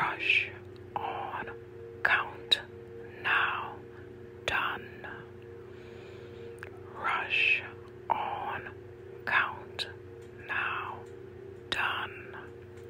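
A voice whispering the chant 'rush, on, count, now, done' twice, one word about every second, over a steady low humming drone, with a few sharp clicks between words.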